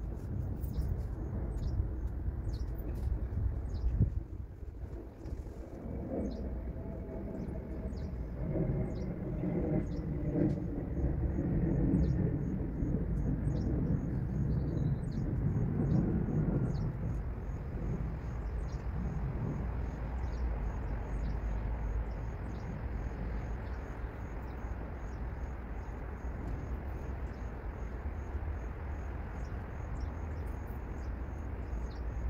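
Outdoor field ambience: small birds giving short high chirps over a steady low rumble, joined from about ten seconds in by an insect's fast, even, high-pitched trill. A louder low hum swells and fades in the middle.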